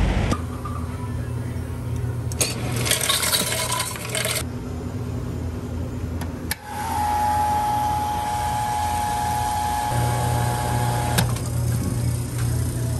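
Self-serve soda fountain filling a thermos: a spell of hissing pour about two to four seconds in, over the machine's steady low hum. From about seven seconds in, a steady high whine runs with the hum, stopping shortly before the end.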